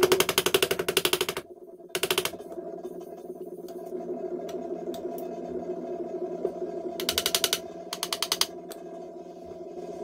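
Small hammer tapping rapidly on the frets of a guitar neck, seating the fret wire into the fretboard, in short runs of quick taps: a long run at first, a short one about two seconds in, and two more near the end, over a steady background tone.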